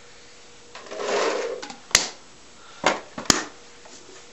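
Reusable rubber paintballs (reballs) poured from a pod into an Empire Prophecy paintball loader, rattling in for about a second, followed by three sharp clicks as the loader and marker are handled.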